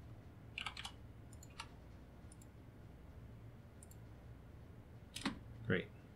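Computer mouse clicking, a few short clicks here and there with pauses between them.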